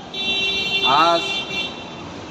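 A vehicle horn sounds one steady note for about a second and a half, under a man's voice.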